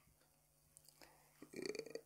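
Near silence, then about a second and a half in a brief, soft, low throat sound from the man.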